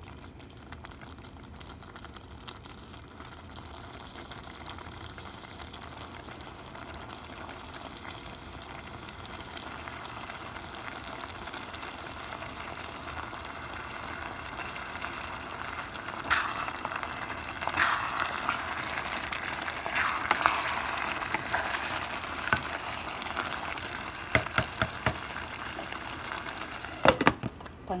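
Spaghetti in ground-beef tomato sauce sizzling and bubbling in a pot, slowly growing louder, with sharper crackles and pops from about halfway. A few sharp knocks near the end.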